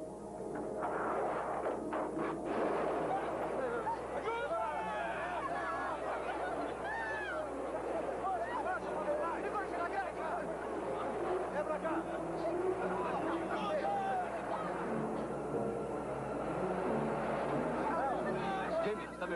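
A crowd of many people screaming and shouting in panic, voices overlapping continuously with no clear words.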